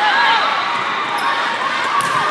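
Athletic shoes squeaking repeatedly on a volleyball sport-court floor as players move during a rally, over the hall's background chatter, with a sharp ball contact near the end.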